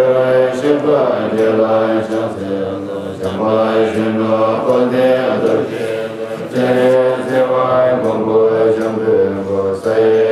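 A group of Tibetan Buddhist monks chanting a prayer together in a low, steady recitation, with short dips in level roughly every three seconds between phrases.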